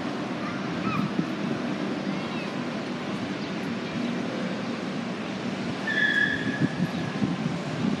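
Steady outdoor street ambience: a continuous roar of passing traffic with faint distant voices. About six seconds in, a short high whistle-like tone sounds once, dipping slightly in pitch.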